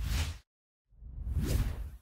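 Whoosh sound effects for an animated logo. A short whoosh fades out about half a second in, then a longer one swells and dies away near the end.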